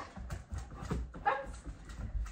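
A dog whining briefly a little over a second in, over the soft thuds of feet and paws moving on the floor.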